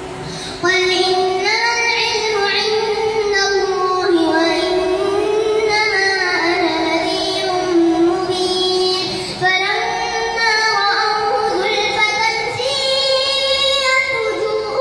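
A young boy reciting the Quran aloud in a melodic chant as prayer leader, heard through a microphone: long held phrases that glide up and down in pitch, with short breath pauses about half a second in and again near nine and a half seconds.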